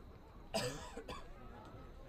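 A person coughing: one loud, short cough about half a second in, then a fainter one about a second in, over faint background voices.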